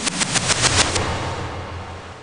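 Game-show graphic sound effect for the topics board: a rapid run of sharp clicks, about a dozen a second, over a low rumble. The clicks stop about a second in and the rumble fades away.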